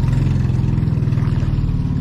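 Small fishing boat's engine running steadily at trolling speed, a low, even drone with a fine regular pulse.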